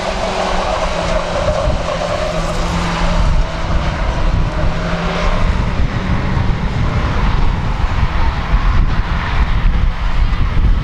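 Several Class 1 autograss cars, small hatchbacks, racing on a dirt track with their engines running hard together, over a heavy low rumble.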